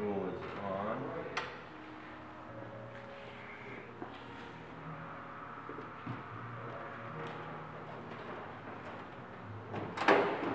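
Light clunks, knocks and rustling as a person climbs up into the open cab of a 1924 Kissel truck, with one sharp click about a second and a half in; the engine is not running.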